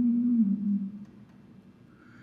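A man's voice humming a long low note that bends slightly upward, holds, and fades away about a second in, leaving near quiet.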